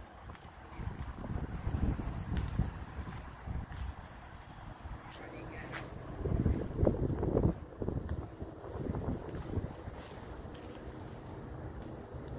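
Wind buffeting the microphone in irregular low gusts, strongest about halfway through.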